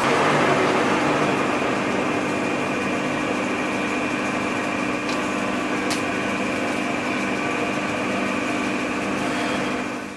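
Metal lathe running: a steady mechanical hum carrying a few constant tones, with two short clicks about five and six seconds in.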